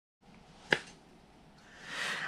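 A single short, sharp click about three-quarters of a second in, against a very faint background.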